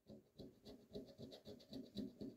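A coin scraping the scratch-off coating of a Nagy Kerék lottery ticket in quick, faint, repeated strokes, about four or five a second.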